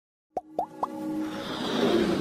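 Sound effects of an animated logo intro: three short pops, each a quick upward blip in pitch, about a quarter second apart, followed by a rising swell as the intro music builds.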